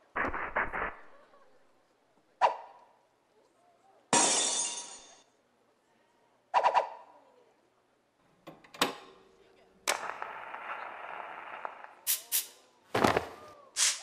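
Sparse sound effects in a dance routine's soundtrack, with the music dropped out: a few short hits and clicks separated by silences, a burst of noise about four seconds in, and a steady hiss from about ten to twelve seconds, ending in a cluster of sharp hits.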